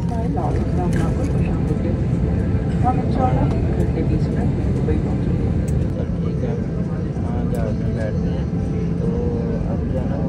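Steady low hum inside an Airbus A320 cabin waiting at the gate, with indistinct passenger chatter over it.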